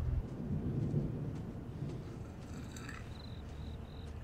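Low outdoor rumble, like distant thunder, with a faint high chirp repeating from about three seconds in. A music cue stops just as it begins.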